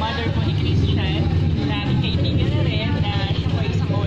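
A woman talking, with a steady low rumble in the background.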